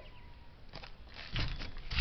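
Camera-handling and movement noise while the camera is being carried: rustles and low bumps on the microphone, rising about halfway through after a quiet start.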